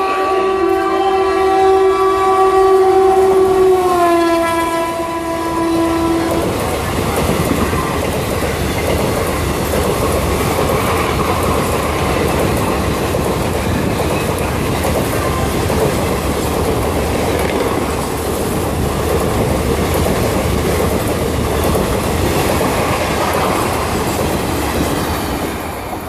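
Indian Railways locomotive horn sounding one long blast as a superfast express runs through a station without stopping. The horn's pitch drops about four seconds in as the locomotive passes, and it cuts off a couple of seconds later. After that comes the steady rumble and wheel clatter of the passenger coaches rushing past at speed.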